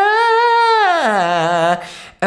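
A man's voice sliding up and down in a smooth siren on a single vowel, rising to a high note about half a second in, then gliding down to a low note held until it stops shortly before the end. It is a vocal exercise for moving between chest voice and head voice through the passaggio with the throat kept open.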